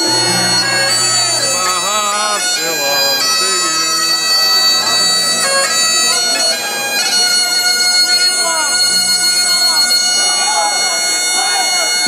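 Bagpipes playing a tune: steady low drones sounding under a chanter melody that steps from note to note.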